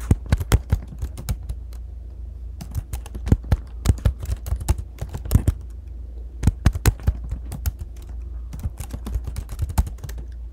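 Typing on a computer keyboard: quick runs of key clicks in several bursts with brief pauses between them, over a steady low hum.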